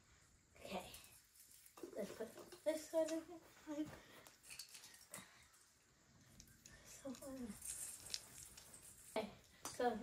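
A child's voice, soft and indistinct, with a few faint clicks of handling between the words.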